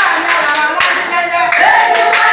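A group of women singing together while clapping their hands to the beat.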